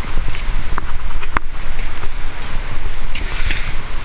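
Low rumbling noise on the microphone, with a small click about a second in and a sharp click about a second and a half in.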